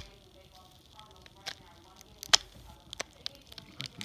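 A foil trading-card pack being handled and pulled at to open it: scattered short, sharp crinkles and crackles of the foil wrapper, about six of them, the loudest a little after two seconds.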